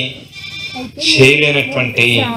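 A man speaking through a microphone and public-address loudspeaker, the voice amplified with a harsh edge. It pauses in the first second, then resumes about a second in with a drawn-out phrase.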